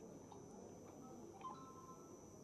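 Near silence: room tone, with a faint click and a brief faint high tone about one and a half seconds in.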